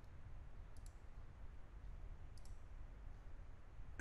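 Two faint computer mouse clicks, about a second and a half apart, over a low steady hum.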